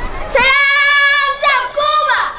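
A child singing solo close to the microphone, starting about a third of a second in and holding long, steady notes with short breaks between them.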